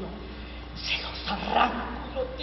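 A woman's voice making short wordless dog-like sounds, growls and yelps rather than words, in a few brief bursts from about a second in.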